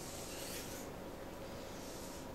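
Brief soft rustle of braided paracord and a flexible measuring tape rubbing as they are handled, strongest in the first second, over a faint steady room hum.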